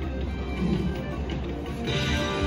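Wild Life video slot machine's bonus-round music playing during a free spin, with a brighter chiming win tune coming in near the end as the spin pays out.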